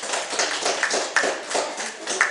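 A few people clapping by hand, the separate claps distinct and uneven rather than a dense roar of applause.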